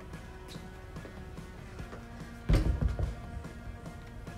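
Background music playing, with one heavy thump about two and a half seconds in: a dumbbell set down on the rubber gym floor.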